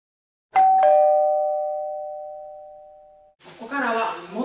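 Two-note ding-dong chime like a doorbell: a higher note, then a lower one about a third of a second later, both ringing out and fading over about three seconds. A voice starts speaking just as the chime dies away.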